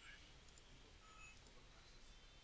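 Near silence: room tone with a couple of faint mouse clicks about a second apart.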